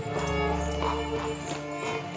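A horse's hooves clip-clopping in a steady beat as a horse-drawn carriage moves, under background score music with long held tones.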